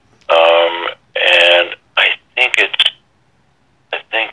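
A voice over a telephone line: two drawn-out sounds, then a couple of shorter syllables, with no words made out.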